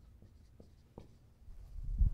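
Dry-erase marker writing on a whiteboard in a few short strokes, followed near the end by a low rumble and thump.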